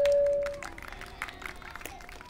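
Public-address feedback from the podium microphone: one steady ringing tone that swells, then cuts off suddenly about two-thirds of a second in, followed by a few faint clicks.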